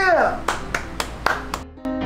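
A quick, uneven run of about five hand claps, then piano background music begins near the end.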